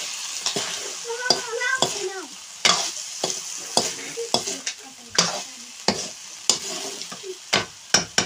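Potatoes and greens sizzling in oil in a black iron wok over a wood fire, stirred with a spatula that scrapes and knocks against the pan in repeated, irregular strokes.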